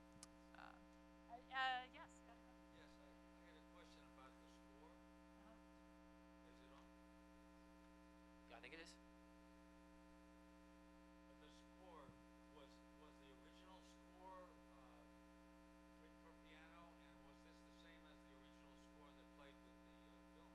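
Near silence with a steady electrical mains hum on the recording. A few faint, brief sounds come through now and then, one of them voice-like about a second and a half in.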